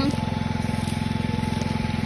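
A small engine running steadily, a continuous low pulsing drone with a faint high whine over it.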